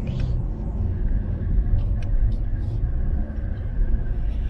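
Road noise inside a moving car's cabin: a steady low rumble of engine and tyres while driving.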